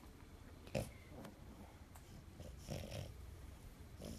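A sleeping French bulldog snorting faintly through its short nose, with one short, sharp snort about a second in and a few softer ones after it.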